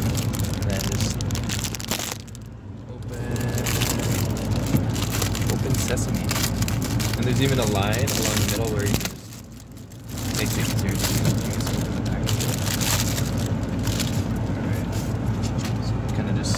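Thin plastic magazine sleeve crinkling and crackling close to the microphone as it is cut open and pulled off, with two short pauses. A steady low hum runs underneath.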